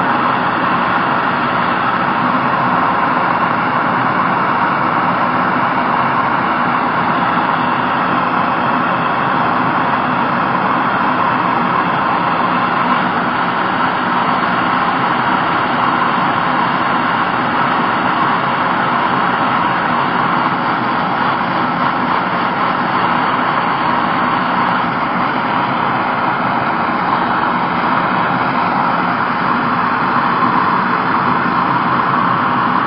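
MAPP gas blow torch burning steadily, its flame held into a crucible to melt gold powder.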